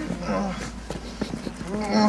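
A man's wordless groans, twice, short and bending in pitch.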